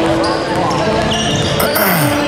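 A basketball being dribbled on a hardwood gym floor, with voices in the gym around it.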